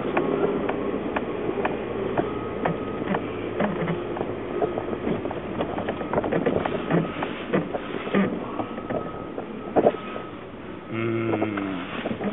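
A Jeep's engine and road noise heard inside the cabin as it drives slowly, with frequent small clicks and rattles. Near the end the noise drops and settles to a steady hum as the Jeep comes to a stop.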